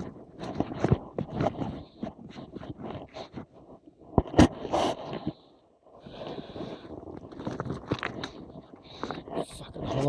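Rustling, scraping and irregular knocks of a person moving about and handling stones at a drystone wall, heard through a chest-mounted phone camera; one sharp knock about four seconds in.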